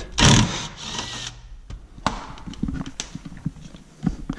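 Cordless impact wrench on a 12 mm underbody panel bolt: a short loud burst of hammering near the start breaks it loose, then a brief spell of the motor spinning and scattered light clicks.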